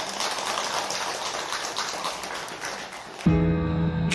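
Congregation applauding: a dense patter of many hands clapping. About three seconds in it cuts to louder music with sustained tones.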